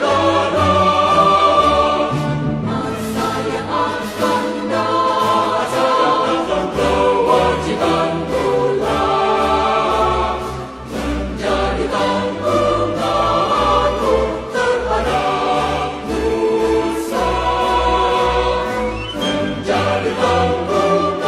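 Music with voices singing together over a pulsing bass line.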